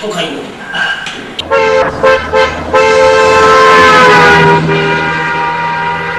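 A horn tooting: three short toots in quick succession, then one long held toot that dips slightly in pitch partway through.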